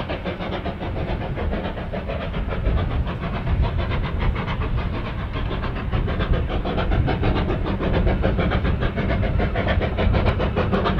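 Andrew Barclay industrial saddle-tank steam locomotive working a three-coach train, its chimney exhaust beating in a rapid, regular rhythm over a steady low rumble.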